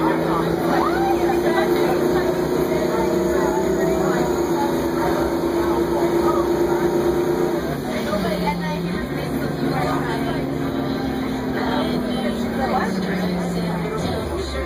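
Crown Supercoach Series 2 bus engine droning under way, its pitch rising as it accelerates, dropping suddenly with a gear shift a little past halfway, then climbing again before dropping at a second shift near the end.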